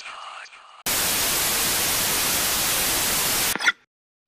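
Television static sound effect: an even, loud hiss of white noise that starts suddenly about a second in and cuts off abruptly near the end, followed by a short blip as of an old TV set switching off.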